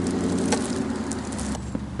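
Steady low hum of an idling car engine, with a few light clicks.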